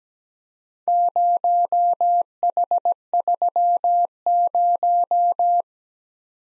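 Morse code sent as a keyed single-pitch beep, starting about a second in and spelling the group zero, H, three, zero: five long dashes, four quick dots, three dots and two dashes, then five dashes again.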